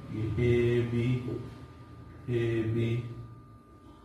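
Only speech: a man's voice drawing out two long, flat-pitched syllables, with quiet pauses between them.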